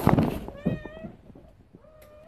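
A loud scuffling crash, then a domestic cat hanging from an opening in the ceiling meowing: one drawn-out meow about half a second in, and another starting near the end.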